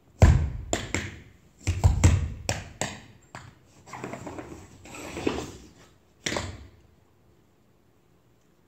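Tap shoes on a wooden stage floor: a run of heavy stamps and sharp taps in the first three seconds, then softer scuffing and brushing steps, and a last loud stamp about six seconds in.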